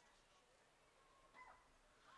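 Near silence with a faint background hiss, and one brief faint sound about one and a half seconds in.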